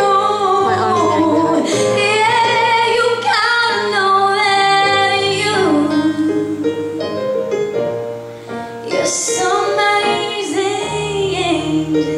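A woman singing into a microphone over instrumental accompaniment, holding long notes with a waver in them, amplified through a hall's sound system.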